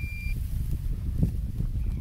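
Minelab Equinox 800 metal detector giving a steady high tone that cuts off just after the start. After it there is a low rumble and one faint knock about a second in.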